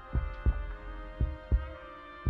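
Tense background music built on a low double thump like a heartbeat, one pair about every second, over sustained steady tones.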